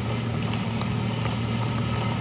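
A vehicle engine running steadily, a low even hum with no change in speed.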